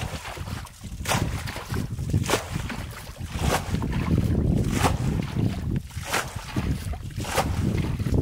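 Muddy water sloshing and splashing as a plastic bucket is dipped and tipped out again and again, bailing a shallow pool. The splashes come in a steady rhythm of about one scoop a second, over a constant low sloshing.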